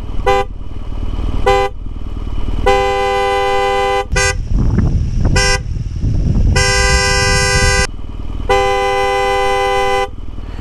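Motorcycle horns sounding together in two notes: four short toots mixed with three longer blasts of about a second each, over a low rumble of wind and engine.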